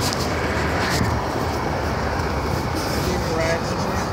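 Steady outdoor traffic noise with a low rumble, and a faint voice briefly near the end.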